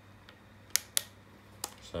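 Sharp plastic clicks from a hand working the grip of a plastic Nerf-based gel blaster: two clicks close together about three-quarters of a second in, then a fainter one.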